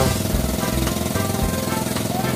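Outrigger boat's engine running steadily with a fast, even chug.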